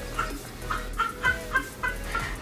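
A woman laughing hard, in a run of short, high-pitched bursts of about three a second.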